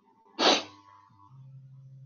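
A person sneezing once, short and sharp, about half a second in. A steady low hum starts about a second later.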